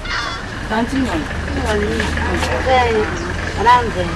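Animated speech in Soussou, the voice swooping up and down in pitch, over a steady low hum.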